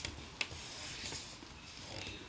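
A sheet of paper being folded and creased by hand. A light tap comes about half a second in, then a soft rubbing hiss as fingers slide along the fold.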